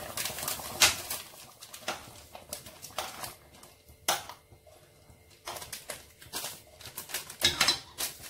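Foil soup-mix sachet crinkling and being shaken and tapped as tamarind powder is poured into a pot of soup: scattered short crackles and clicks, thickest near the end.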